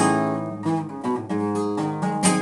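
Acoustic guitar strummed in flamenco style, with no voice: a loud strummed chord right at the start, then a run of further chord strokes.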